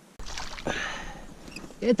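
Splashing and rustling as a small perch is lifted out of the water on the line beside a rowboat. It is a short burst of noise that dies down before a voice comes in near the end.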